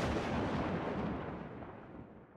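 Tail of a boom-like explosion sound effect used as a dramatic editing stinger: a wide hiss and rumble that fades steadily, its high end dying away first, and stops abruptly at the end.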